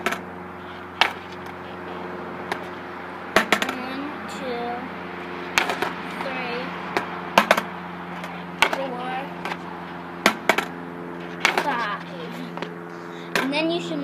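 Skateboard clacking against a concrete driveway, a sharp knock every one to two seconds as the board is set back down, over a steady low hum.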